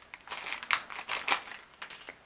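Thin plastic parts bag crinkling and rustling in irregular bursts as fingers rummage inside it and draw out a piece.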